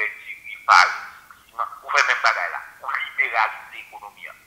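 A person talking over a telephone line, the voice thin and narrow-sounding, in short phrases with brief pauses.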